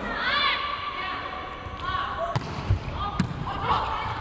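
A volleyball thumping a few times in a reverberant sports hall, about two seconds in, as the ball is bounced and struck for a serve, with voices around it.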